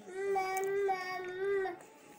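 A young child's high voice holding one long sing-song note, lasting most of two seconds and stopping near the end.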